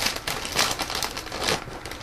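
Metallic foil cereal bag being pulled open and handled, crinkling with irregular crackles.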